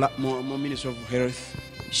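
A man's voice, quieter than the speech around it and held on level pitches, over soft background music.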